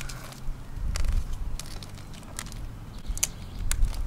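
Clear paint-protection film crinkling and crackling as it is peeled by hand off a car's painted bumper, with scattered small clicks where glue holds it to the paint.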